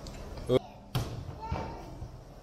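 A child's brief vocal cry, then about a second in a single thud of a child landing on a padded gym crash mat.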